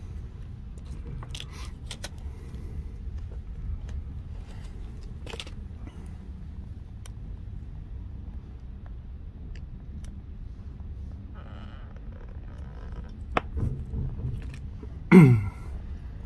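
Light clicks and scrapes of hands handling fly-tying tools and materials at a vise, over a steady low rumble of room noise. About a second before the end comes a short, loud sound that falls in pitch.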